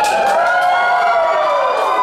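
Audience whooping and cheering, several long overlapping 'woo' calls that slide down in pitch, with some clapping.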